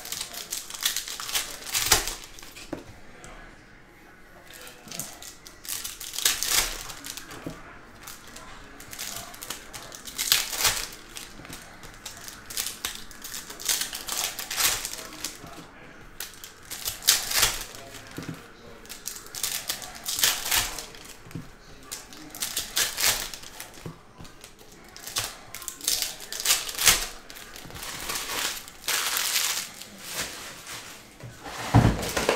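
Foil trading-card packs of 2022 Panini Certified football being torn open and crinkled, with stiff cards clicking and tapping as they are flicked through and set down on a stack. The crisp crackling and clicking comes in short bursts every few seconds, with softer rustling between them.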